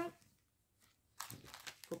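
Faint rustling and crinkling of plastic packaging as craft kit items are handled and put back into their bag, starting about a second in after a near-silent pause.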